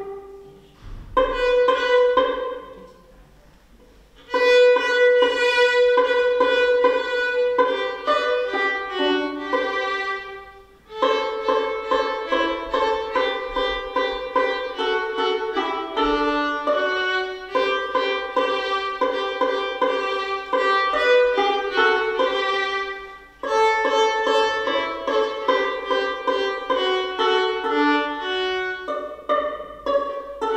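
Two violins playing a duet in phrases, with a short pause about three seconds in and a brief break near eleven seconds.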